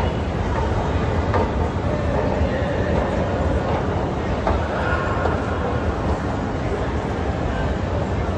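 Escalator running: a steady low rumble with a light rattle, heard in the echoing hall of a large shopping mall.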